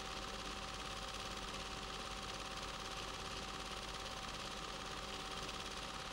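A low, steady mechanical whirr with a faint fast rattle and a thin steady hum running through it, unchanging throughout.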